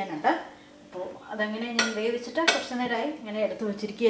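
Eggs knocking against a ceramic plate as it is handled, with two sharp clinks near the middle.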